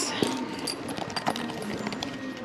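Handbags being pushed about and opened on a rack: a scatter of light, irregular clicks and rustles from their metal chains, clasps and straps.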